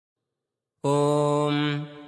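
A man's voice chanting one long held syllable on a single steady pitch, in the style of Sanskrit mantra recitation, starting about a second in and fading out near the end.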